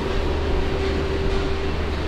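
A steady low rumble and hum with a faint, constant whine running through it, from machinery running in the background.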